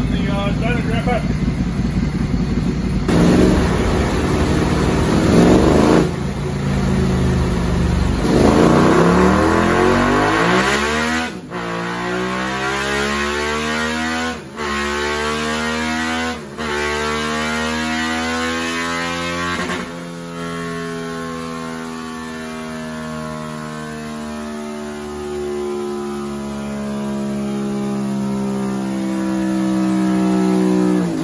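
2018 Suzuki SV650's 645 cc 90-degree V-twin with a full Yoshimura exhaust, run on a chassis dyno. It is blipped up and down for the first several seconds, then pulls up through the gears with four brief breaks at the shifts, and finishes in one long, slowly rising pull in top gear for the power run.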